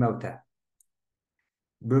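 A man's voice trailing off, then a pause of dead silence with one faint tick, and his voice starting again near the end.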